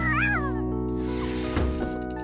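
A cartoon cat yowling once with a wavering, rising-and-falling call in the first half-second, over held background music notes.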